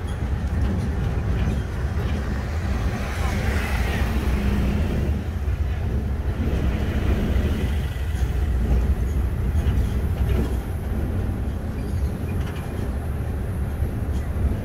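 Steady low rumble of a moving songthaew (pickup-truck taxi): engine and road noise heard from its open rear passenger bed.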